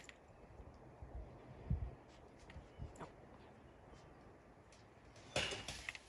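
Puppy moving about and playing with a cloth toy on a wooden deck: faint scattered taps and knocks, and a short rustle near the end.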